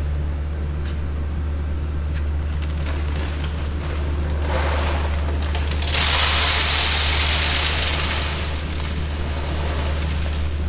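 Seed corn pouring from a bag into a John Deere 7000 planter's seed hopper: a rushing hiss that builds about five seconds in, is strongest for a couple of seconds and then tapers off, over a steady low hum.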